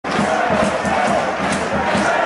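A football crowd singing and chanting, a dense mass of many voices together.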